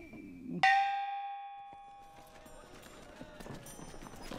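A short muffled vocal sound, then a sudden metallic bell strike about half a second in that rings and fades away over about two seconds.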